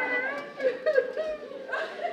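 A man's voice in exaggerated mock wailing, its pitch sliding up and down in broken cries.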